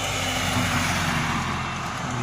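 Steady road and wind noise heard from inside a moving car at highway speed.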